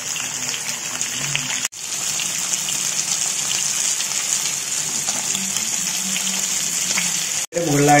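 Masala-coated karimeen (pearl spot fish) shallow-frying in hot oil in a pan, a steady sizzle. The sizzle cuts out for an instant twice, about two seconds in and near the end.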